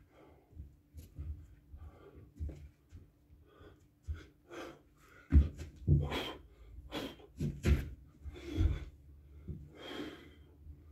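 A man breathing hard through a burpee, with sharp exhaled puffs, and thuds of hands and feet landing on a rubber floor mat, the loudest about five seconds in.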